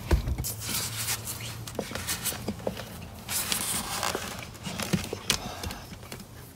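Rustling and scuffing of loose-fill attic insulation being pushed back into place by hand, in several stretches, with scattered light knocks.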